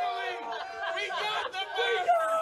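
Excited shouting and chatter from several men; one long held yell fades out about a second in, and other voices follow.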